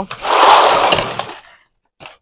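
Rustling, scraping handling noise from a black plastic seedling flat of basil being moved on the table, lasting about a second and a half and loudest just after it starts.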